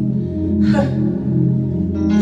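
Keyboard holding soft sustained chords, with a breath drawn sharply into the singer's microphone about three-quarters of a second in.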